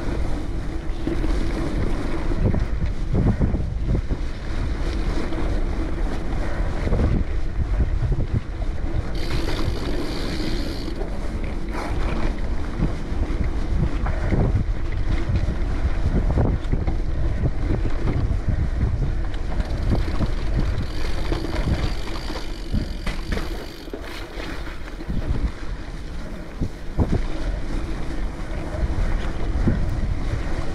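Wind buffeting the microphone over the rumble of a Cannondale Topstone gravel bike's tyres rolling on a dirt trail, with frequent short knocks and rattles as the bike runs over bumps.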